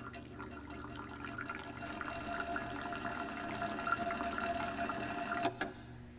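Red wine bubbling and churning in a glass lab beaker under a laboratory stirring apparatus, with a steady whine over it. It starts suddenly and cuts off shortly before the end.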